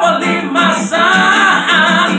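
A man singing a long wordless vocal line whose pitch bends up and down, with an acoustic guitar strummed underneath.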